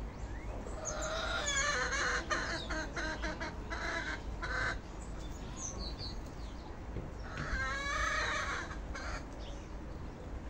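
Birds calling in two bouts, the first starting about a second in and running for nearly four seconds, the second shorter near the end, over a steady low rumble.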